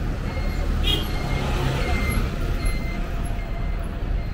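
Street traffic: vehicle engines running with a steady low rumble, and a short hiss about a second in.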